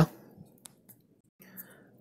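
A short pause in a man's narration: the end of a spoken word, then faint room tone with two tiny clicks and a soft in-breath just before he speaks again.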